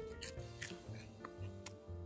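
A dried roasted cricket being chewed: a few short, crisp crunches at irregular intervals, over soft background music.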